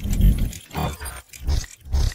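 Sound effects of an animated logo intro: a run of short, rough, low-heavy bursts, about two a second.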